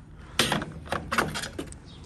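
Several sharp plastic clicks and scrapes as the screw-in base of a folding-panel LED garage light is turned by hand. The first and loudest comes about half a second in, and a few smaller ones follow over the next second.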